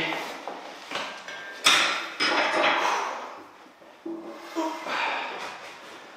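Metal clanks and knocks from a leg press machine with a weight stack as it is set for a heavy set of calf raises. It makes several separate sharp hits that ring briefly, the loudest about two seconds in.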